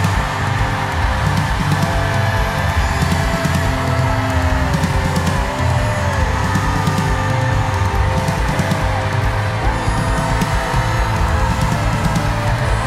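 Loud live worship band music with a heavy low end and sustained guitar and keyboard tones, with a congregation's voices shouting and crying out over it.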